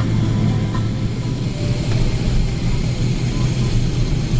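Cabin noise of a Boeing 777-300ER taxiing, its GE90 engines running at low taxi power: a steady low drone with a strong hum, heard from a seat beside the engine.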